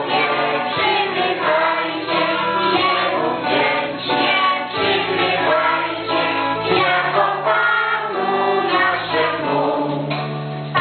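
A group of children singing a Christmas carol together over sustained instrumental accompaniment.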